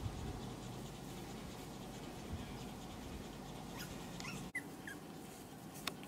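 Pomeranian puppy giving a few faint, short, high whimpers about four to five seconds in, over quiet background noise.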